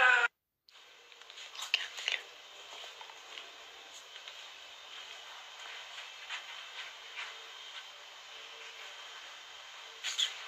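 Low steady hiss of a quiet room through a phone microphone, with a few faint clicks and soft whispery sounds about two seconds in, after an abrupt cut to silence at the start.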